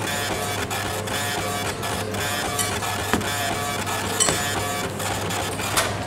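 A small motorised machine runs with a steady low hum and fast mechanical chatter. It starts just before and stops just after, lasting about seven seconds.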